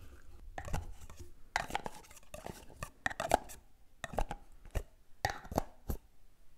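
Close-miked ASMR handling of a plastic jar and its green plastic lid, and fingers working on a foam microphone cover: a series of short bursts of sharp plastic taps and clacks, coming irregularly about every half second to second.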